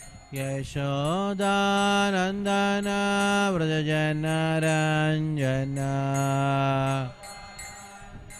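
A man chanting a devotional prayer solo into a microphone, holding long notes that step up and down in pitch, from about half a second in until a second before the end.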